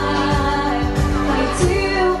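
A woman singing a pop song live into a microphone, with held notes, over band accompaniment of electric guitar and a steady beat.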